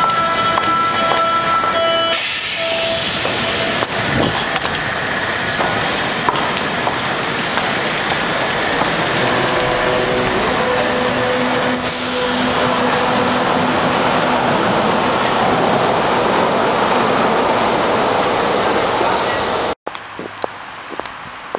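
Loud, steady noise of an underground U-Bahn station, with a Berlin U-Bahn train standing at the platform. A few steady tones sound in the first two seconds and stop abruptly. The sound cuts off just before the end.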